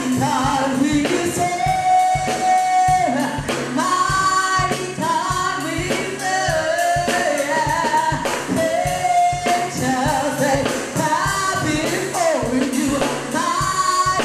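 A woman singing a gospel praise-and-worship song into a microphone, her held notes bending and wavering in pitch, over a band with drums and tambourine keeping a steady beat.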